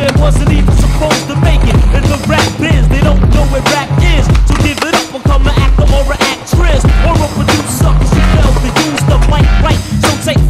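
Skateboard wheels rolling on concrete and the board knocking and grinding on ledges, mixed under music with a heavy, pulsing bass beat.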